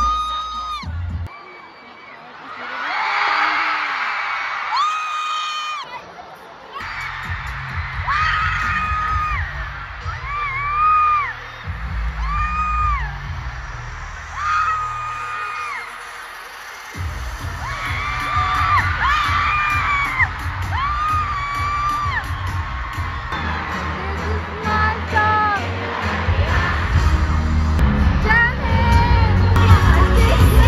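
Live pop concert music over an arena PA, with a crowd cheering and screaming; a heavy bass beat comes in about seven seconds in and runs steadily from about seventeen seconds, getting louder toward the end.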